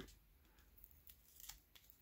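Near silence, with a few faint ticks as fingers work at the seal of a tightly sealed trading-card pack.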